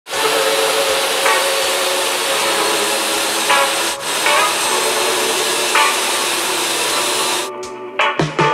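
Table saw running and cutting through a glued-up wooden panel pushed on a crosscut sled: a steady saw noise with a motor whine, which drops away shortly before the end. Music with a beat plays faintly underneath.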